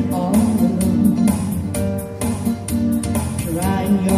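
Live dance band music with a steady beat and a melody line played over it.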